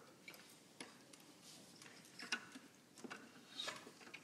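Faint, scattered clicks, taps and paper rustles as wind players handle their instruments and turn sheet music, with the sharpest click a little past halfway.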